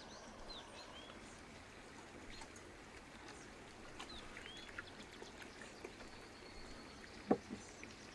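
Small birds chirping faintly, short rising and falling calls, over a steady outdoor hiss. Near the end a dull knock as a glass jar is set down on a wooden table, followed by a lighter knock.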